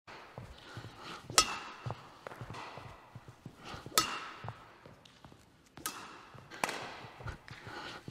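Badminton racket strings striking a shuttlecock three times, about two and a half seconds apart, each a sharp crack with a short ringing ping, as overhead reverse (sliced) drop shots are played. Lighter footstep thuds on the court floor between the hits.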